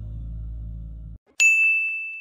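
The low tail of a song's last notes fades out. After a brief silence, a single bright ding sound effect rings out about a second and a half in and slowly decays, an end-card chime.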